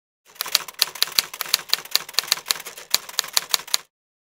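Typing sound: a rapid, irregular run of sharp key clacks, about five a second, that stops abruptly just before the end.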